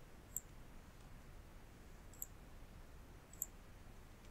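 Three light computer mouse clicks, spread over a few seconds, against faint steady hiss.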